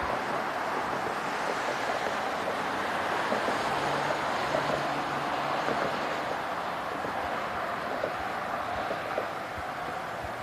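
Steady road and wind noise from vehicles driving along a freeway, a continuous rushing with no voices, played from the soundtrack of a news clip.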